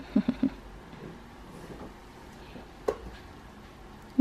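Three short, quick vocal sounds just after the start, then a single sharp knock about three seconds in, against a quiet small room.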